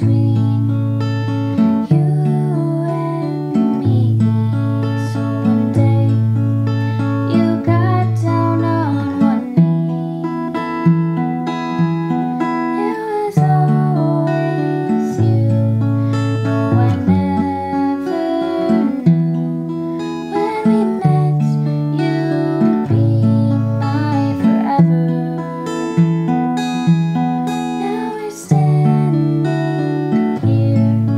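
Acoustic guitar with a capo, playing a slow song in sustained chords that change every second or two, with a woman's voice singing softly over it at times.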